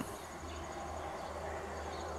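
Faint, steady chirring of insects, typical of crickets, over a low background hum.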